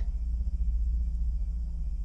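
A steady low rumbling drone with nothing else standing out above it.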